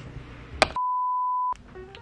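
A single steady electronic bleep at one pitch, lasting about three-quarters of a second, with all other sound cut out beneath it. A brief click comes just before it.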